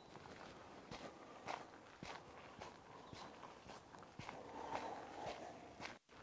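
Faint footsteps of a person walking on a dirt track through grass, about two steps a second.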